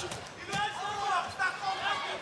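Men's voices talking and shouting over a noisy arena crowd, with a blow thudding as a kick lands near the start.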